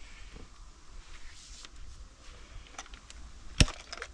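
A Master Lock key safe being handled: a few faint clicks, then one sharp click a little after three and a half seconds in, the loudest sound here.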